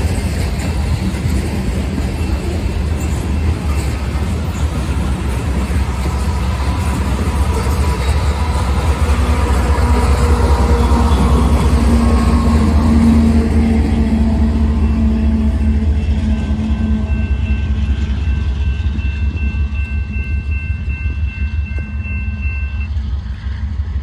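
Loaded grain hopper cars of a freight train rolling past, steel wheels running on the rail. A rear diesel-electric locomotive then passes with its engine hum, loudest about halfway through and fading after. Thin steady high ringing tones sound through the last part.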